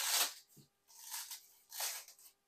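Hook-and-loop (Velcro) strip on the top of a fabric binder insert being pulled open, heard as short rasping rips: one at the start, one about a second in and one near the end.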